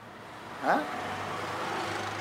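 A motor vehicle passing by: steady engine and road noise that gradually grows louder over the second half.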